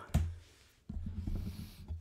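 A single sharp click, then a low rumble lasting about a second.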